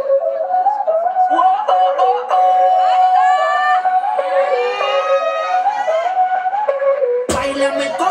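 Dance music played through loudspeakers: a wavering melody line with sliding pitch sweeps in the middle, then a fuller section with deep bass cutting in abruptly near the end.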